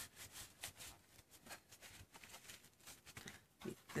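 Near silence with faint, irregular small clicks and taps.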